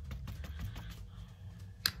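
Paintbrush dabbing paint onto paper in a series of light, irregular taps, with one sharp click near the end.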